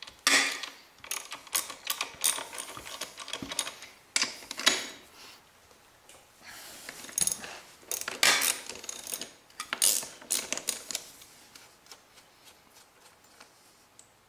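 Socket ratchet clicking as the rear brake caliper bolts are loosened and backed out. The clicks come in two quick runs, the second ending about three quarters of the way in, then trail off to a few faint clicks.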